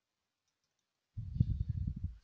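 Silence, then about halfway through a rapid, irregular run of low thumps and rumbles lasting about a second.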